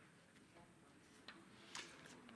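Near silence with faint paper handling: a soft tick about a second in and a brief rustle of sheets near the end.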